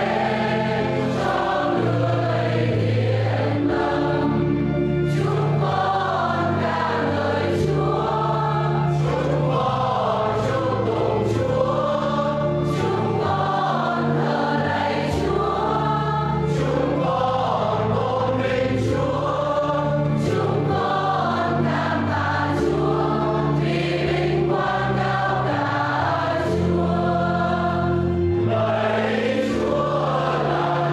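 Choir singing a Vietnamese hymn during Mass, with sustained low instrumental accompaniment and a steady beat marked by light ticks a little over a second apart.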